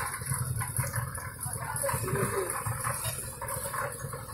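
Concrete mixer's engine running steadily with a low, pulsing drone. About halfway through there is a brief wavering cry, a voice or an animal.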